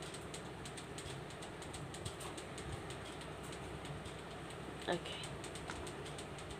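Faint scratching and light ticking of a pen writing by hand on a ruled notebook page.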